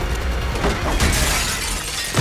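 Glass shattering about a second in, a sudden crash that fades as the pieces fall, over a steady low rumble.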